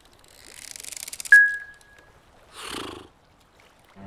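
A high rustle builds for about a second and is cut off by a sharp click with a short, clear ringing tone that fades away. This is the stopwatch being started. A short breath follows a little later.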